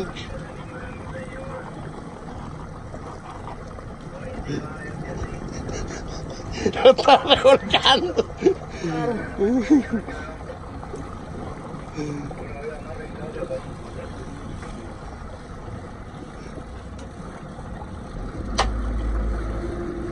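Steady low running noise of a sport-fishing boat's motor and the sea under a fish fight. Near the end there is a single sharp click, and a deep low rumble comes in and holds.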